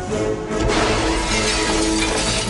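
A large plate-glass window shattering as a body crashes through it about half a second in, the breaking glass scattering for over a second. Film score music plays underneath.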